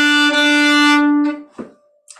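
A fiddle bowing one long, steady note at about the pitch of the open D string, which stops about one and a half seconds in.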